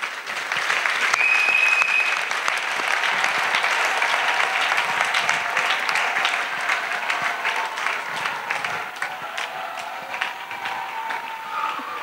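Congregation clapping and applauding, many hands at once, loudest in the first half and easing off slightly toward the end.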